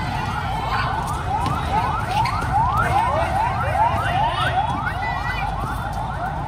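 A siren in a rapid yelp, each short rising sweep repeating about three times a second, over steady background noise.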